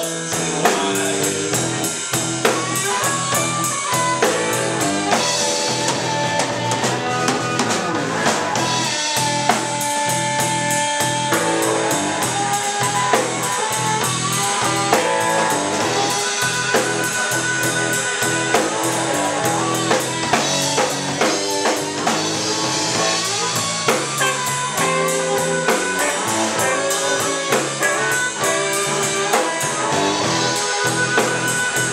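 Live blues band playing an instrumental 12-bar blues passage on electric bass, electric guitar and drum kit, with a steady beat and no vocals.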